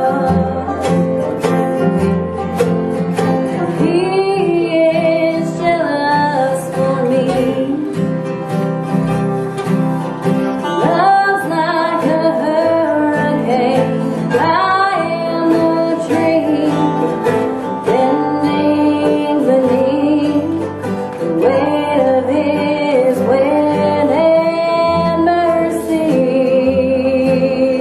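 Bluegrass band playing: acoustic guitar, banjo, mandolin and upright bass, with a woman's voice singing over them in places.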